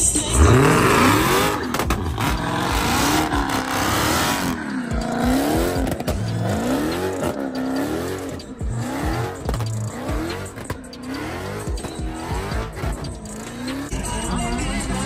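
Ford Mustang engine revving hard through a burnout, its pitch climbing sharply about half a second in, then rising and falling about once a second as the throttle is pumped, over tire squeal.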